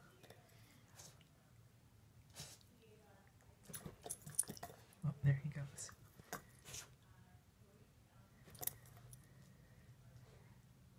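Dog gnawing on a dried cow tail chew: scattered, irregular clicks and crunches of teeth on the hard tail. A brief, louder low sound about five seconds in.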